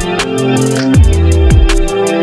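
Electronic background music with a drum-and-bass feel: quick sharp ticks over deep bass hits that slide down in pitch about twice a second, under a held synth chord.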